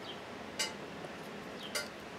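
Faint handling of a small paper flower bud by fingers: two short, crisp ticks about a second apart over a steady low hiss.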